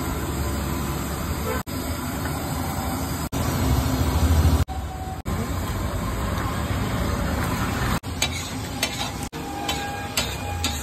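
A big flat iron tawa of thick tomato-onion masala bubbling and sizzling while a steel ladle stirs and scrapes through it. The sound breaks off for an instant several times, and sharp clicks of the ladle striking the pan come near the end.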